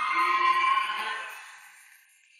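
A sustained electronic chord, the tail of a musical sound-effect sting, fading away over about a second and a half.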